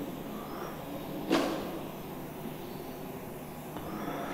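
Low, steady room noise of a lecture hall picked up by the lectern microphone, with one short sharp noise a little over a second in.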